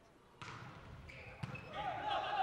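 Faint gymnasium room sound with a single soft thump of a volleyball being struck on the serve, about one and a half seconds in.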